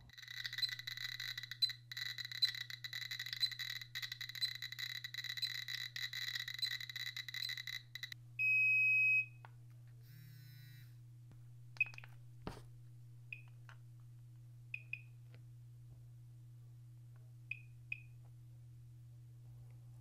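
GQ GMC-500+ Geiger counter clicking very rapidly, with its steady alarm beep, as it counts about 1,400 counts per minute from uranium ore. This stops after about eight seconds. A loud one-second electronic beep follows, then a short warbling chirp sequence, and then a handheld gamma survey meter gives sparse single chirps at a low count rate, with one handling knock, over a low steady hum.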